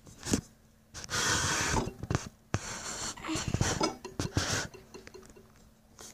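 Close rustling and rubbing, broken by several sharp knocks: cloth and the recording device being handled right at the microphone.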